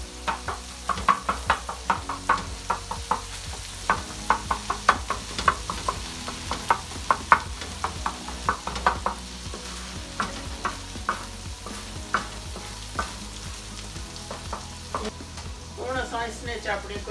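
Wooden spatula scraping and knocking on a large metal tawa as keema (minced meat) is stir-fried with tomatoes and masala, over a steady sizzle. The strokes come quick and irregular, a few a second, thinning out near the end.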